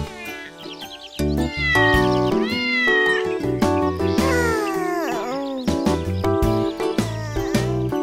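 Cartoon kitten meowing several times, rising and falling cries, over gentle children's background music.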